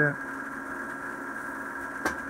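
A steady machine hum with several fixed tones, unchanging throughout, like a small motor or fan running.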